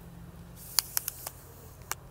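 A handful of short, sharp clicks, about five in just over a second, as the coax cable and fittings on a pneumatic mast's upper section are handled, over a steady low hum.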